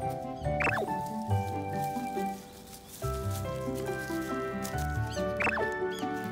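Background music: a melody of sustained notes over a bass line, with short squeaky glides that rise and fall, about a second in and again near the end.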